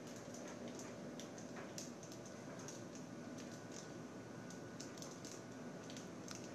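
Faint, irregular light ticks and clicks over a low hiss as a small foam flying wing fitted with servos is handled and tilted about by hand.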